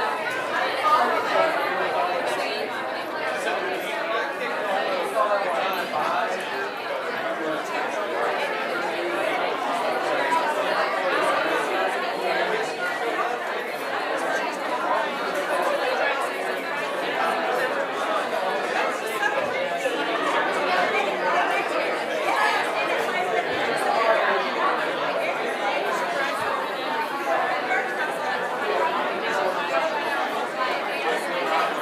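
Congregation chatting after a church service: many overlapping conversations at once, a steady hubbub of voices with no single speaker standing out.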